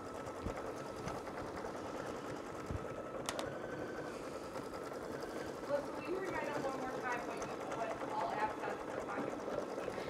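Computerized embroidery machine stitching a free-motion embroidery design, a steady even running sound of the needle working through fabric in the hoop. It is stitching without trouble now that the correct flat-back needle is fitted.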